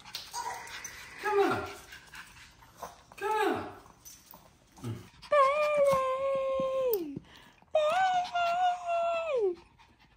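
A small Yorkshire terrier howls twice, each long howl holding a steady pitch and then dropping away at the end. Before the howls come a few short, falling voice sounds.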